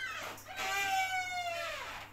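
Wooden door's hinges creaking in one long, drawn-out tone as the door swings shut, dipping in pitch at the end.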